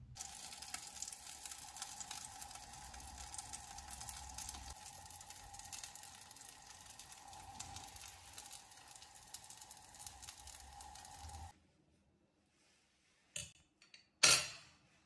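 Chicken wings roasting on an oven rack, sizzling with a dense crackle over a steady hum. It cuts off suddenly about eleven seconds in, followed by a brief click near the end.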